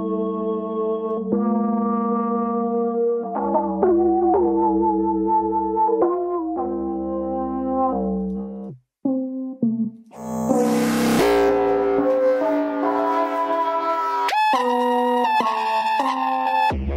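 Keyboard-played notes from a software instrument run through the BeepStreet Combustor resonator effect, giving sustained, brassy resonant tones that change pitch every second or two. After a short break about nine seconds in, a new Combustor preset makes the sound harsher and buzzier, with added hiss.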